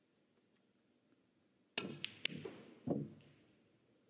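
Snooker shot: a sharp click of the cue tip on the cue ball, a second crisp click as the cue ball strikes the yellow, then a duller knock as the yellow hits the far cushion. It is a missed long pot.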